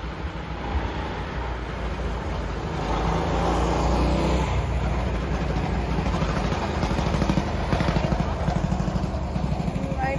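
Go-kart engine running as a kart comes round the track and passes close by. The sound builds up about three seconds in and pulses rapidly through the second half.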